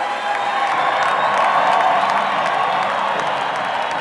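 Large arena crowd cheering and applauding, building to its loudest around the middle.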